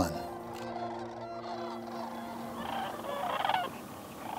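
Sandhill cranes calling, their rolling, rattling calls strongest in the second half.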